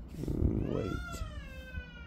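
A single long animal cry that rises briefly and then slowly falls in pitch, held for about a second and a half, after a short rustle.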